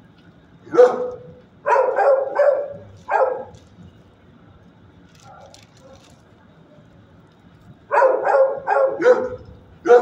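Dog barking in short, sharp barks: a single bark about a second in, a quick run of four, a pause of several seconds, then another quick run of four near the end.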